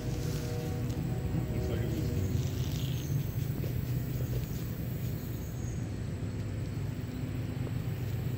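A steady low rumble, with faint voices in the first couple of seconds.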